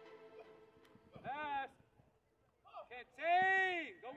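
Two drawn-out shouts from a person's voice, each rising then falling in pitch: a short one about a second in, and a longer, louder one near the end.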